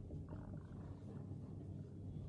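Faint squeak and scratch of a marker pen writing on a whiteboard, over a low steady room hum.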